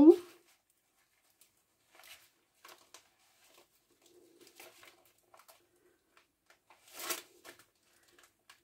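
Faint rustling and brushing of paper pages being shifted and pressed flat by hand, with a louder rustle about seven seconds in.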